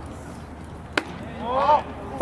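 A pitched baseball smacking into the catcher's mitt: one sharp pop about a second in. A short shout follows near the end.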